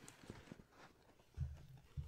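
A bag being moved: faint rustling and light handling clicks, then a dull low thump about one and a half seconds in.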